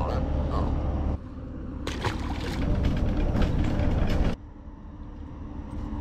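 Steady low rumble of outdoor background noise, with a few sharp clicks about two seconds in. The level drops abruptly about a second in and again past four seconds.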